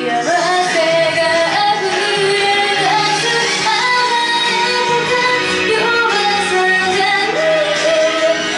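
A woman singing a slow Japanese pop ballad live into a microphone over instrumental accompaniment, holding long notes and sliding between them.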